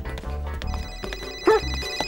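A mobile phone ringing with an electronic ringtone of several steady high tones, starting well under a second in, over background music.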